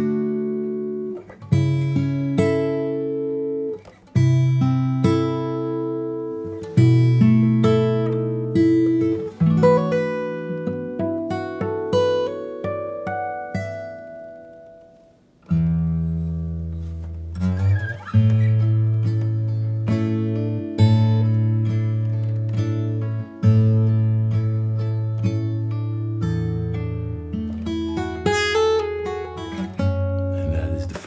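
Steel-string acoustic guitar played fingerstyle in standard tuning: a mellow line of bass notes under ringing chord arpeggios, with a run of higher notes partway through. It pauses briefly about halfway, then continues over lower, longer-held bass notes.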